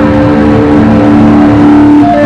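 Electric guitar holding one long, loud sustained note.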